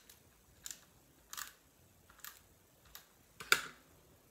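Small cardstock pieces being handled on a cutting mat: five short paper rustles and taps at irregular intervals, the sharpest one near the end.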